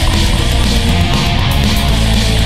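Pagan black metal music: dense distorted guitars over bass and drums, loud and unbroken.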